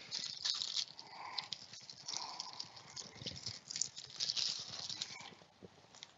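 Irregular crackling and rustling of a sealed trading card box and its plastic wrap being handled, with small clicks and taps.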